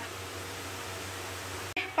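Steady hiss from a steel pan of thick paneer butter masala gravy simmering on a gas stove, cutting off abruptly near the end.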